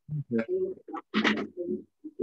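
Indistinct, murmured speech: a person's voice in short broken phrases.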